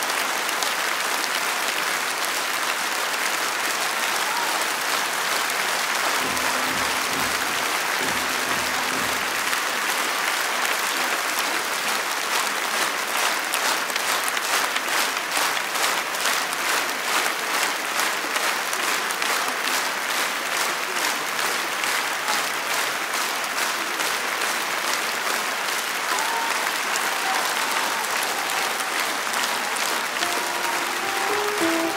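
Large concert audience applauding; for a stretch in the middle the clapping falls into a steady rhythm, and faint instrument notes come in near the end.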